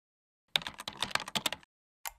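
Computer keyboard typing sound effect: a quick run of key clicks lasting about a second, starting half a second in, laid over text being typed into an on-screen search bar.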